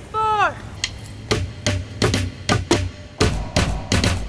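Sticks beating a percussion rhythm on street objects, starting about a second in right after a spoken count-in. The hits are sparse at first and come faster toward the end, about three a second.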